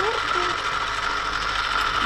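SEB electric sauce maker running, its motor-driven stirrer turning a milk béchamel in the pot, with a steady high-pitched motor hum.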